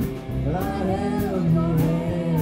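Live rockabilly band playing: electric bass, electric guitar and drum kit with regular cymbal hits under a gliding melody line.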